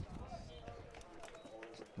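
Quiet ballpark ambience with faint, distant voices.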